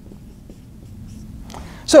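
Faint strokes of a dry-erase marker writing on a whiteboard, with a man's voice starting right at the end.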